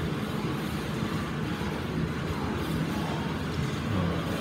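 Steady low background rumble with no speech and no sudden sounds.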